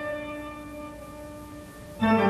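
Music: a sustained chord with several steady tones, dying away and growing quiet over the two seconds.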